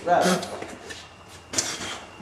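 Brief bursts of men's voices, one just after the start and another shorter one near the end, between rap verses.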